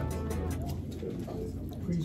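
Background music stops abruptly at the start, leaving faint room noise, with a low murmuring voice coming in near the end.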